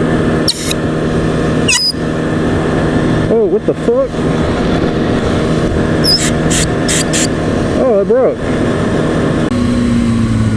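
Kawasaki ZX-6R 636 inline-four engine running at low road speed under wind noise, its pitch sliding down near the end as the bike slows. A few short high hisses come about six to seven seconds in.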